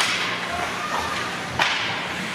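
Two sharp cracks of hockey sticks and puck striking during ice hockey play, about a second and a half apart, the second the loudest, each ringing on in the rink.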